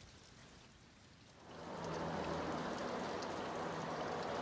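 Near silence for about a second and a half, then a steady hiss like trickling or falling water.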